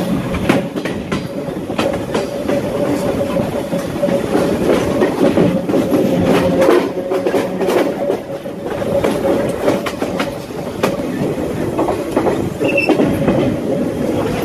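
SuperVia Série 400 suburban electric train running at speed: a steady rumble with a constant whine, and wheels clicking irregularly over the rail joints.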